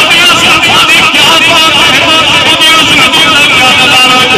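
A man's voice chanting in long, wavering held notes, amplified loud over a public-address loudspeaker.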